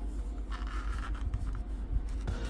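Cardboard CPU retail box being slid open by gloved hands: a dry papery scraping and rubbing as the inner tray is pushed out of its sleeve, with a few light handling clicks.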